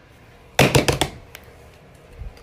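A quick flurry of five or six sharp taps or slaps about half a second in, lasting about half a second: hands coming down on plush toys lying on a paper sheet over a wooden floor.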